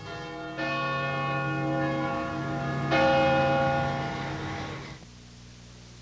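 A church bell struck twice, about half a second in and again about three seconds in, each stroke ringing on and slowly dying away. The ringing drops off about five seconds in, leaving a faint hum.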